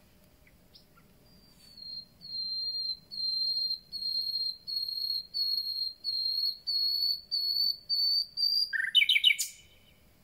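Common nightingale singing: a phrase of about a dozen pure whistled notes on one pitch, about two a second, swelling and rising slightly, ended near the end by a fast, loud flourish of quick notes.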